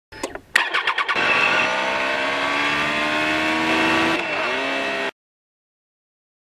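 A motorcycle engine cranking and catching about half a second in, then running with its pitch slowly rising, dipping briefly and picking up again before the sound cuts off suddenly about five seconds in.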